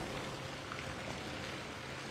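A pause in the talk that holds only faint, steady background noise: an even hiss with no distinct events.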